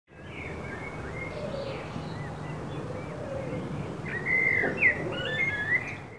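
Songbirds chirping and singing in short whistled phrases over steady low background noise, the calls growing louder and more frequent in the last two seconds.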